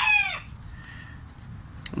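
The tail of a rooster's crow, its long call bending down in pitch and stopping about half a second in. After that it is quiet apart from a faint click near the end.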